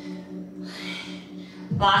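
Quiet background music with steady held tones, and a soft breathy exhale about halfway through.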